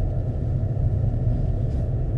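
Steady low rumble of a car driving along a paved road, engine and tyre noise heard from inside the cabin.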